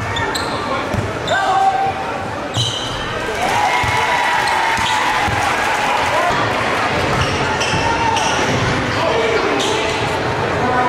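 Basketball being dribbled on a hardwood gym floor, a run of repeated low thuds, with voices calling out in a large echoing gym.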